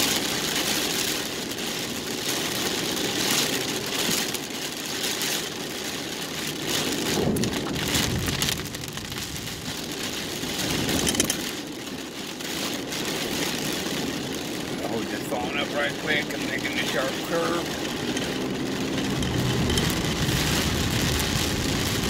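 Rain hitting the windshield and roof, heard from inside a car driving on wet road, with the windshield wipers sweeping and a steady rush of tyre and engine noise.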